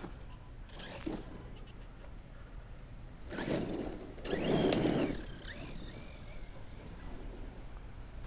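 Electric motor of a Redcat Landslide RC monster truck, over-volted on a 4S battery, whining as its tyres spin and scrabble on dirt in two short bursts of acceleration, about three and four and a half seconds in.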